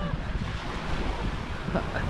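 Wind buffeting the microphone over the wash of surf: a steady, gusty rushing noise.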